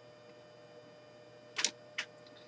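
Felt-tip marker writing on paper: quiet at first, then a short stroke about a second and a half in and a brief tick near the end.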